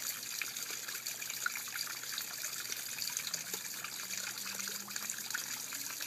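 Small garden fountain's water trickling and splashing steadily down rocks into a pond.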